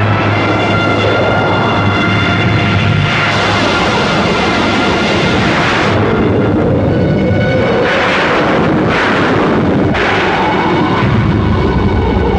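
Film sound effect of a raging fire: a loud, continuous rumbling noise that swells in surges about a quarter, half and two-thirds of the way through and again near the end, with thin held high tones from the score over it.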